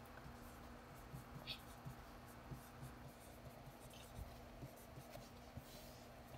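Faint dry-erase marker writing on a whiteboard: light scratching strokes and small taps as letters are drawn and underlined.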